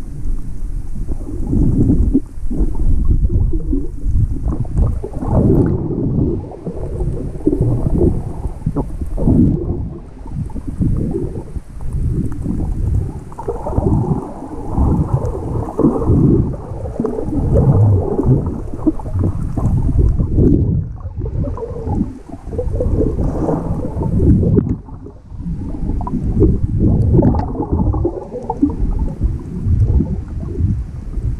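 Underwater sound picked up by a GoPro Hero5 in shallow sea water: a muffled, irregular rumbling and rushing of water moving around the camera, rising and falling in uneven surges.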